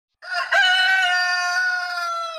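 A rooster crowing once, a short opening note followed by one long held note that sags slightly in pitch at the end.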